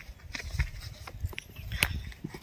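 Plastic courier parcel being handled on a motorcycle seat and picked open at one corner: light, irregular clicks, taps and rustles of the plastic wrapping.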